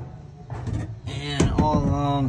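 A man talking over a low, steady background hum, with a quieter pause in speech during the first second.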